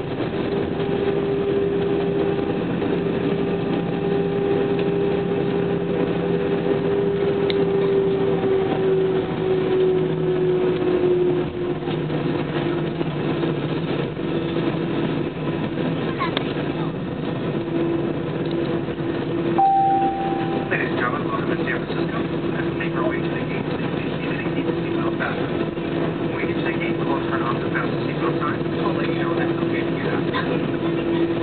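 Airliner's jet engines humming steadily inside the passenger cabin, their pitch easing down slightly about ten seconds in. A brief single chime sounds about two-thirds of the way through, followed by scattered light clicks and faint voices.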